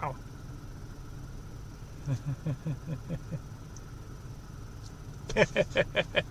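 Low, steady vehicle rumble heard from inside a car, with faint voices about two seconds in and a short laugh near the end.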